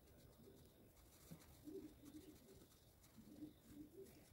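Near silence, with a bird cooing faintly in two short phrases of a few low notes each, about halfway through and again near the end.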